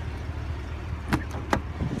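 Two sharp clicks about half a second apart: the driver's door handle of a 2015 GMC Yukon Denali being pulled and its latch releasing as the door opens, over a steady low rumble.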